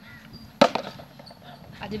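A partly filled plastic water bottle landing upright on a concrete floor after a flip. One sharp knock comes about half a second in, followed by a couple of smaller taps as it settles.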